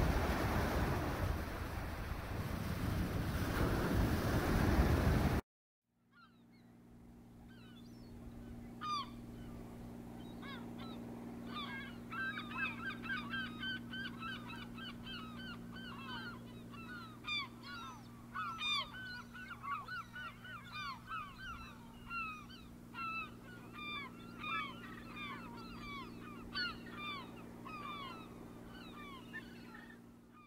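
Wind on the microphone and surf breaking for the first five seconds, stopping at an abrupt cut. Then a flock of birds calling: many short, downward-sliding calls overlapping, over a low steady hum.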